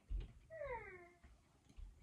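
A cat meowing once: a single short call falling in pitch, with a few soft low thumps of handling around it.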